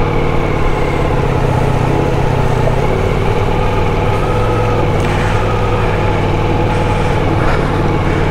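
Ducati Multistrada V4S's 1158 cc V4 engine running steadily at low speed as the bike wades through floodwater, with a constant rush of water and wind noise under it.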